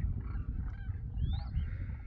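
A flock of demoiselle cranes calling, scattered croaking and honking calls with one short rising call near the middle, over a steady low rumble.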